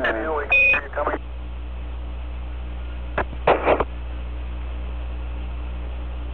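Steady hiss and hum of the Apollo 11 air-to-ground radio channel. About half a second in comes one short high beep near 2.5 kHz, a Quindar tone marking a Mission Control transmission. A brief snatch of voice breaks in about three and a half seconds in.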